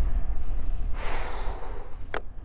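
A rider's breathy exhale, about a second in and lasting under a second, over a steady low rumble of wind and road noise on a bicycle-mounted microphone.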